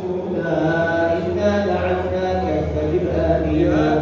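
A man's voice chanting a religious text into a microphone, in long held notes that slowly rise and fall.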